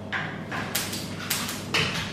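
A few short knocks and clatters, four in two seconds, as things are handled and moved about low in the kitchen while fetching food, over a steady low hum.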